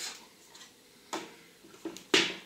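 A few light taps and scuffs of a cardboard box being handled and set on a tabletop, the clearest one about a second in.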